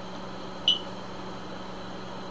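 Steady low electrical hum and hiss of the recording, broken about two-thirds of a second in by one short, sharp, high-pitched chirp.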